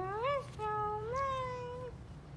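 A child's voice, drawn out in two long wordless notes that slide up and down in pitch, the second held for over a second.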